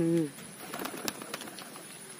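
A domestic pigeon's low coo right at the start, followed by faint scattered clicks.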